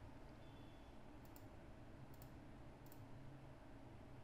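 Computer mouse clicking: three quick pairs of faint clicks, about a second apart, over a low steady hum.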